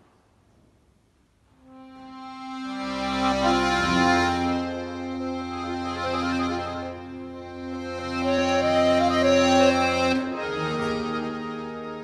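Steirische Harmonika (diatonic button accordion) coming in about two seconds in with long held chords over steady bass notes, changing chord shortly after ten seconds.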